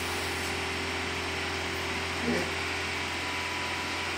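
Steady mechanical hum with an even hiss behind it, with no change in level, and a short spoken "yeah" about halfway through.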